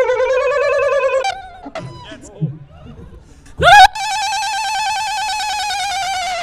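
A howling voice put through a robot-voice effect, holding long warbling notes. The first note breaks off about a second in. After a short gap, a second, higher note swoops up sharply and is held.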